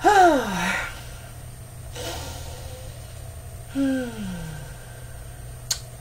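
A woman's long voiced sighs, two of them, each sliding down in pitch: one at the start and one about four seconds in, with a breath drawn in between. A single small click comes near the end.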